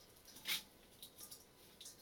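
Hands rustling and scrunching dried forest moss as it is being wetted and mixed in a metal bowl, with one louder crackle about half a second in and softer rustles after.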